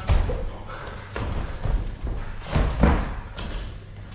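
Thuds of a shadow-boxer's feet on the canvas of a boxing ring as he steps and pushes off while throwing punches, a few dull thumps with the loudest about three seconds in.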